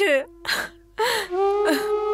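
A woman's tearful voice, speaking with breathy sobs, over a held flute-like woodwind note of background film music that swells about a second in.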